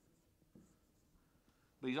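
Faint dry-erase marker strokes on a whiteboard as a word is written, with a light tap about half a second in. A man's voice starts near the end.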